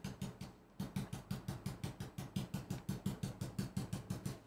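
Stencil brush stippling paint through a stencil onto a board: rapid, even light taps, about seven a second, after a brief pause in the first second.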